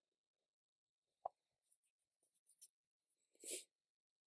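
Faint handling sounds of thin die-cut cardstock layers on a cutting mat as they are lined up and pressed together: a sharp tap about a second in, a few light ticks, then a brief paper rustle near the end.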